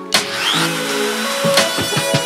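Background music with pitched notes and drum hits, over a compact router's motor starting up with a rising whine about half a second in and then running steadily.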